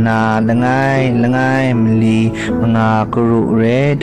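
Music: a voice singing a slow melody in long held phrases over steady, sustained low accompaniment notes.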